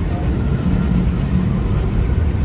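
Steady low rumble of a vehicle in motion.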